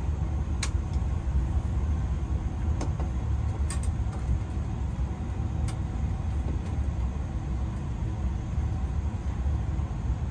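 A steady low rumble runs throughout, with a few light clicks of wires and wire connectors being handled at an electrical box.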